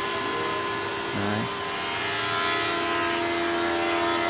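Electric woodworking power tools running steadily in the background, a continuous whine with several steady tones and no break.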